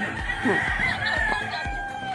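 A rooster crowing: one long, drawn-out call.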